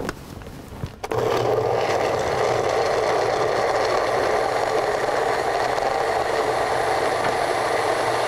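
Personal single-serve blender starting about a second in and then running steadily, puréeing a liquid soy marinade with chunks of onion, ginger and garlic.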